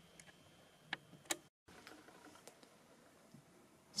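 Near silence: faint room tone with two short faint clicks about a second in and a brief dead gap just after.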